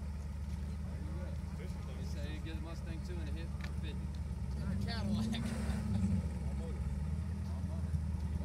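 V8 engines of two staged drag cars idling, a steady low rumble that swells briefly about five seconds in. Crowd voices murmur behind it.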